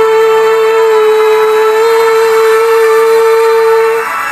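Female voice holding one long sung note, steady in pitch, over the song's instrumental backing; the note stops near the end.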